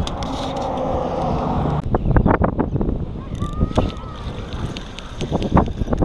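Wind buffeting the microphone for about two seconds, then a run of irregular knocks and bumps with a few short, faint voice sounds.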